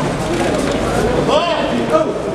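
Crowd of protesters talking and calling out over one another, one voice raised briefly about a second and a half in.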